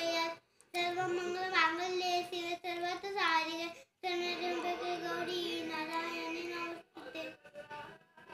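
A young boy chanting a Sanskrit shloka in a sung, melodic voice, holding long notes. Two long phrases with a brief break about four seconds in, then a few short broken fragments near the end.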